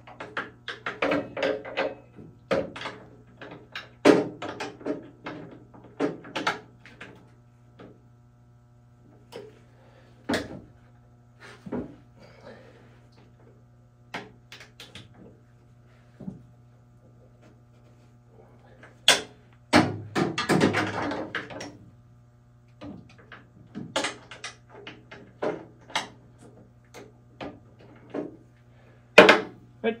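Scattered metallic clicks and knocks of a socket wrench being worked inside a SawStop table saw's cabinet to loosen a 17 mm table bolt, with a denser clatter about twenty seconds in. A steady low hum runs underneath.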